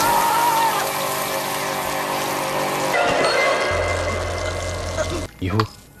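Horror-film soundtrack: a woman's drawn-out, distorted scream over a dark, steady score, cutting about three seconds in to a murky, wet-sounding ambience with a low hum. A narrating voice begins just before the end.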